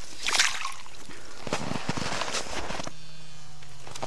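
Water sloshing and splashing in an ice-fishing hole as a small pike is slipped back in by hand, with a brief rush of noise just after the start and scattered clicks of ice and slush. In the last second it drops to a quieter low steady hum.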